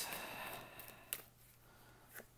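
Faint handling of a tarot deck: a soft rustle that fades out, then a single light click about a second in.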